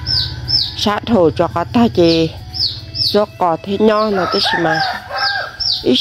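Chicks peeping: short, high, falling peeps repeating about twice a second, heard under a person talking.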